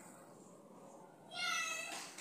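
A single short, high-pitched call held on one pitch for about half a second, starting about one and a half seconds in, over faint room tone.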